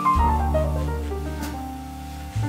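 Live small-group jazz: piano playing a quick descending run over a low held bass note, the sound dying away toward the end.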